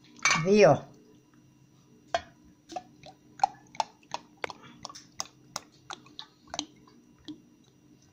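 Olive oil glugging out of a glass bottle as it is poured, a string of short irregular pops a few per second. A brief loud voice with falling pitch comes at the very start.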